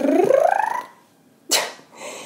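A woman's voice making a drawn-out squeal that rises steadily in pitch for about a second, then a short breathy huff about a second and a half in.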